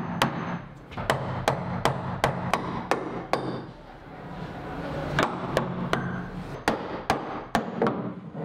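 Claw hammer knocking turned wooden furniture feet off the bottom of a wooden buffet, driving the doweled joints loose. It makes a run of sharp knocks, about two to three a second, pauses briefly about three and a half seconds in, then gives a second run of blows.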